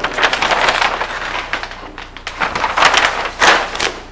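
A large sheet of flip-chart paper rustling and crinkling as it is lifted and turned over the top of the pad. It comes as a run of crackly rustles, loudest near the end.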